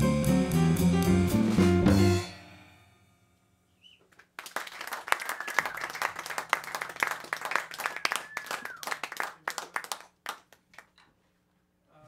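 Jazz quartet of piano, guitar, upright bass and drums ends a tune on a final chord that rings out and dies away about two seconds in. After a short silence, a small audience applauds for about six seconds, thinning out near the end.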